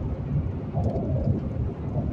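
Steady low rumble of car road and engine noise heard inside the cabin while driving, with a faint brief vocal sound about a second in.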